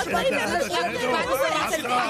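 Several people talking over one another.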